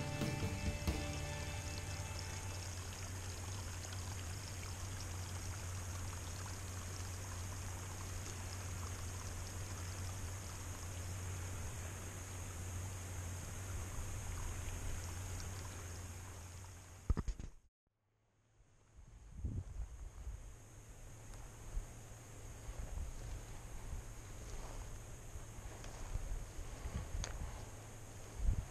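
A small rocky stream running, a steady trickling wash of water that cuts off suddenly about eighteen seconds in. After the cut, quieter outdoor ambience with a few soft knocks.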